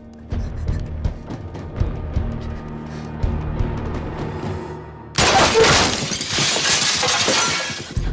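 Tense dramatic score with low drum hits, then about five seconds in a sudden loud crash of shattering glass that lasts a couple of seconds.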